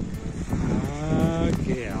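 A voice talking without clear words, over steady outdoor background noise.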